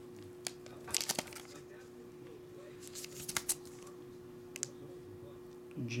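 Faint clicks and crinkles of a hard plastic graded-card slab being handled in the fingers, in small clusters about a second in, around three seconds and near five seconds, over a steady low hum.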